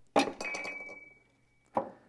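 Stainless steel espresso filter basket clinking against the portafilter as it is pulled out, with a thin metallic ring that fades over about a second and a half, then a duller knock near the end.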